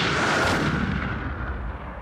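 Intro sound effect: a deep cinematic boom with a rumbling, hissing tail that fades away steadily over about two seconds.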